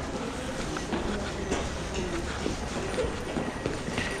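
Covered shopping arcade ambience: a steady low rumble with faint distant voices and scattered footsteps.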